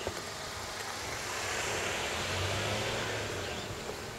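A motor vehicle passing by: a broad road noise that swells to a peak about halfway through and fades away again.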